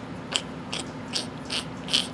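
A series of light, sharp clicks, five of them about two and a half a second, over a faint steady hum.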